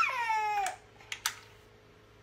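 A cat meows once, the call falling in pitch and ending within the first second. A few sharp clicks follow.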